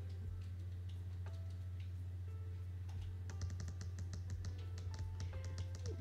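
Computer keyboard keys clicking as drawing shortcuts are pressed, scattered at first and coming thicker from about halfway. Under them runs a steady low hum, with faint background music.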